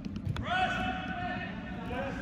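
A few sharp knocks, then a voice shouting one long call held at a steady pitch, echoing in a large indoor sports hall. Other voices murmur underneath.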